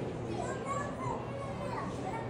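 Indistinct background voices of museum visitors, children's voices among them, over a steady low room hum.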